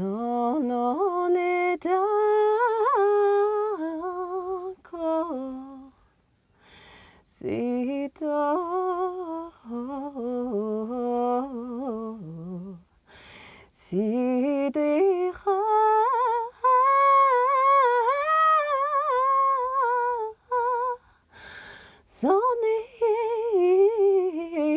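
A woman's voice humming a slow, wordless melody in long held phrases, with short breaths between them.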